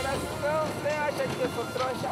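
A high-pitched voice making short sounds that rise and fall in pitch, with no clear words, over a steady background hum.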